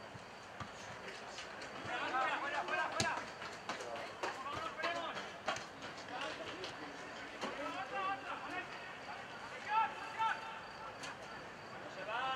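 Players shouting calls to each other across a football pitch in several short bursts, with a few sharp knocks among them, one of them about three seconds in.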